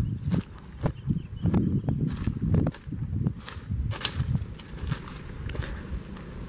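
Footsteps walking over dry ground strewn with dead stalks and leaves, an uneven run of scuffs and crunches underfoot, about two steps a second.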